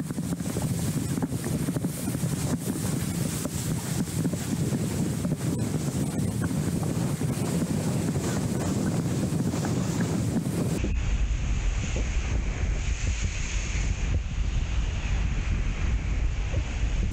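Strong wind buffeting a 360 action camera's microphone on a windsurf rig planing at speed, mixed with the rush and slap of choppy water under the board. About eleven seconds in the sound turns duller, with a heavier low rumble.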